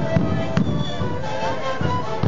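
Sikuri ensemble playing: many siku panpipes sounding held notes together over regular beats of large bombo drums. A sharp crack cuts through about half a second in.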